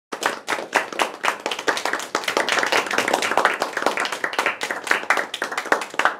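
A small group of people clapping their hands: a dense run of quick, uneven claps that stops right at the end.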